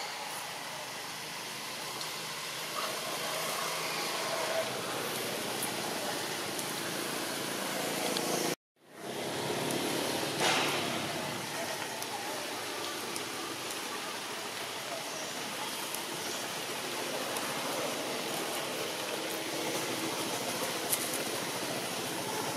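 Steady outdoor background noise, an even hiss with no clear single source. It cuts out completely for a moment a little before halfway, then fades back in.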